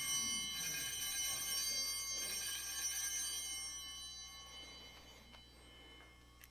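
Altar bells ringing at the elevation of the bread and cup: a high metallic ring of several tones that dies away over a few seconds.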